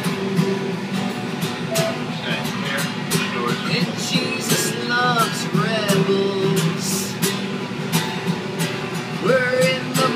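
Acoustic guitar strummed in a steady rhythm, with a harmonica on a neck rack playing bending melody notes over it about halfway through and again near the end.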